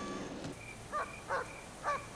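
An animal calling outdoors: three short, pitched calls about half a second apart, starting about a second in.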